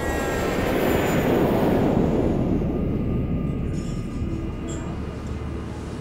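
A rushing noise that swells over the first second and a half and then slowly dies away, over a steady low hum.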